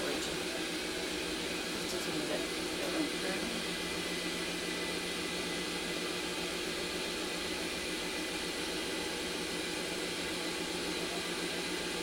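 Steady hum and hiss of medical equipment and air flow in a hospital testing room, with a low hum underneath, unchanging throughout.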